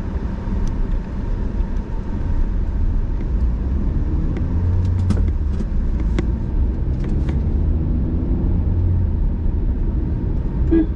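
Car driving on a road, heard from inside the cabin: a steady low rumble of engine and tyres. A few short clicks come around the middle.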